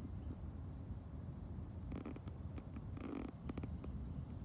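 Low, steady outdoor rumble, with a few brief rustles and clicks about halfway through and again shortly after.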